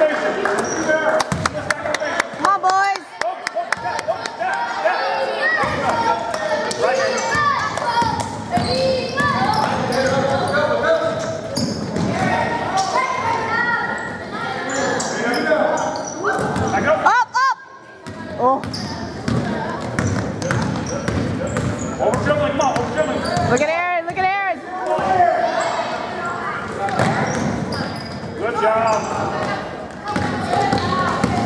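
A basketball dribbling on a hardwood gym floor, with players' and spectators' voices echoing through a large hall. Twice, about halfway through and again near three-quarters of the way, comes a sharp sweeping squeal, likely sneakers squeaking on the court.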